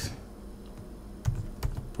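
Computer keyboard typing: a short pause, then a quick run of keystroke clicks in the second half.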